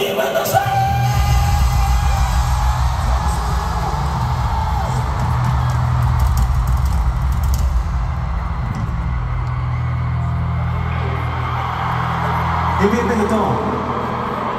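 A live band plays a steady, low instrumental passage over a stadium PA, with noise from a large crowd over it. A man's voice comes back near the end.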